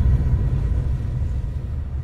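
Deep, low rumble of an edited-in boom sound effect that slowly fades: the tail of a bass impact that lands just as a rising swoosh cuts off.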